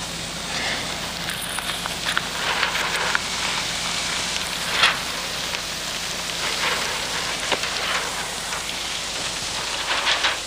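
Steady hissing background noise with a few faint clicks; no voices or music.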